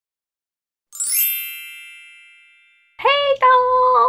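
A bright, many-toned chime rings once about a second in and fades away over about two seconds. Near the end a woman's voice comes in with a long, held, sung-out greeting.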